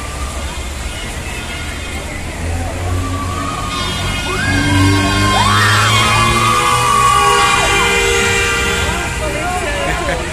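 Street celebration noise: a horn is held for several seconds from about three and a half seconds in until near the end, over people shouting and cars passing on a wet road.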